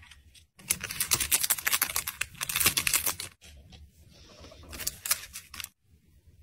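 Fingers handling small paper and plastic packaging: a dense, rapid crackle of crinkling and clicking for about three seconds, then softer rustling with a few sharper clicks near the end, broken by brief silent gaps.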